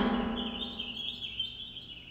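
Small birds chirping continuously in a background birdsong track, with the tail of a spoken word fading away at the start.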